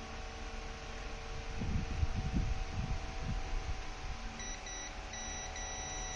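Multimeter continuity beep: a steady high tone that starts about four and a half seconds in, cuts out briefly twice and then holds. It signals that the test probe has found continuity between an ECM connector pin and the harness's CAN-low wire. A low mains hum runs underneath, with a few low rumbling bumps around two seconds in.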